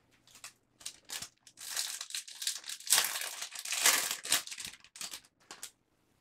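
Crinkling of a foil baseball-card pack wrapper being handled, with cards rustling against each other, in a string of short bursts that are loudest about three to four seconds in.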